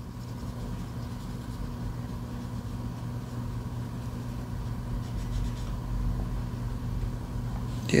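Faint rubbing of a cotton swab scrubbing the rubber buttons of a key fob, over a steady low electrical hum.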